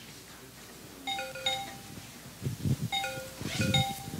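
A short electronic chime tune of a few clear notes, heard twice about two seconds apart, like a phone ringtone. There are a few dull knocks in the second half.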